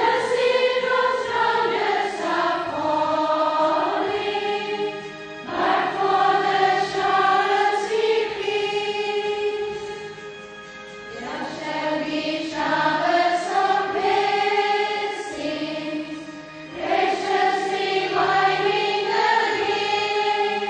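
A choir singing in four slow, sustained phrases, each swelling and then fading.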